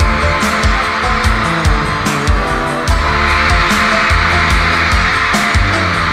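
Live band playing an instrumental passage with no vocals: drums keep a steady beat of about one and a half hits a second over bass notes. A band of noise swells about halfway through.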